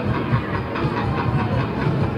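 Fairground thrill ride (the 'Superstar') running at speed: a steady mechanical rumble with a pulsing low throb, mixed with loud fairground music.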